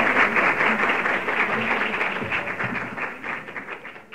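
Audience applauding, the clapping gradually fading away toward the end.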